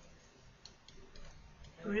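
Faint, irregular ticks and clicks of a stylus on a pen tablet during handwriting, a handful of light taps. A woman's voice starts near the end.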